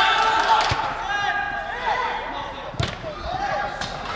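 A football being kicked on an indoor artificial-turf pitch: a few sharp thuds, the loudest about three seconds in and another near the end, with voices of players and spectators calling.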